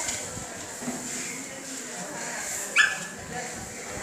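A single short, sharp animal cry, the loudest sound here, nearly three seconds in, over a background of indistinct voices.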